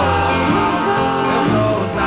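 Early-1960s rock-and-roll band music from a record, led by guitar over bass notes.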